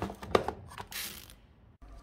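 Handling noise: a few sharp clicks in the first half second and a brief rustle about a second in, then quiet until the sound cuts off near the end.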